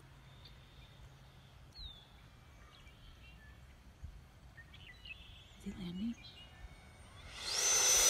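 Faint outdoor quiet with a few thin bird chirps. Near the end, a 90mm electric ducted-fan RC jet builds quickly into a loud rush with a high whine that dips in pitch as it comes in fast on a low pass.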